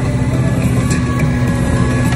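Parasail tow boat's engine running steadily under way, with a steady low hum and a rushing noise over it.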